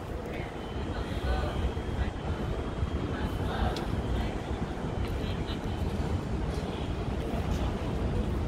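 City street ambience: a steady low rumble of traffic with a haze of general urban noise and faint voices.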